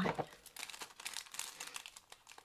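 Small envelope of felting needles crinkling and rustling in irregular crackles as it is handled and opened.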